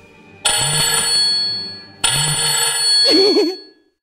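A telephone ringing twice, each ring a bright, many-toned trill lasting about a second and a half, followed near the end by a short wavering pitched sound.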